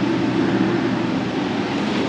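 A steady mechanical drone, level throughout, with a low hum under an even hiss and no distinct knocks or strokes.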